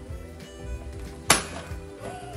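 A single sharp knock with a brief ring, a bit past a second in, as a paper shopping bag is set down on a table, over steady background music.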